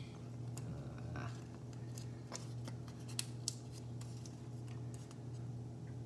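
A sheet of origami paper crinkling and crackling in the fingers as it is pleated and creased, a scatter of small sharp crackles over a steady low hum.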